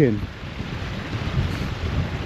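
Wind buffeting the microphone, a low, gusting noise whose level wavers, with the water of a rocky stream running beneath it.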